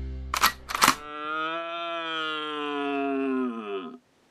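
Two sharp clicks, then a red deer stag roaring: one long, deep call that sinks in pitch just before it stops.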